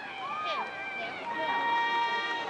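High school marching band on the field: in a short break in the music a voice calls out from the crowd, then a brass note enters about a second in and the rest of the band joins with a sustained chord.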